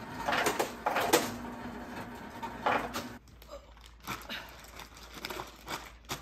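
Refrigerator door ice dispenser running with a steady hum while ice cubes clatter into a plastic bag in several bursts; it stops about three seconds in. Afterwards there are faint rustles of the plastic bag.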